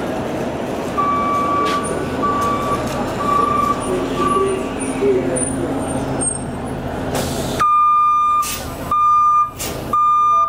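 City transit bus idling at the curb while its warning beeper sounds a repeated single-pitch beep, four beeps at first and then longer, louder beeps near the end. Short hisses of air come between the last beeps.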